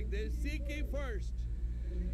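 A voice speaking for about the first second, then a short pause, all over a steady low hum.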